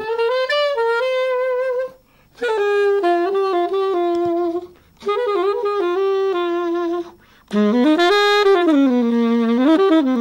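Unaccompanied saxophone playing a melodic line in four phrases with short breaths between them. The last phrase dips to a lower held note near the end.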